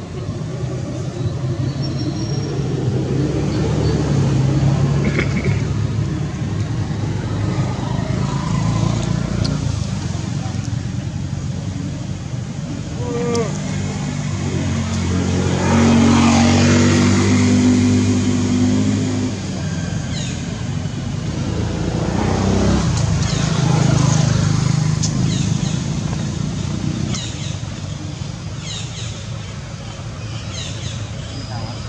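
Passing motor vehicle engines, the loudest going by about halfway through and another a few seconds later.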